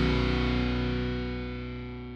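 The song's last distorted electric guitar chord ringing out and fading away, with no new notes struck.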